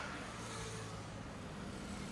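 Road traffic with a motor vehicle passing close by, its engine giving a steady low hum over tyre and road noise.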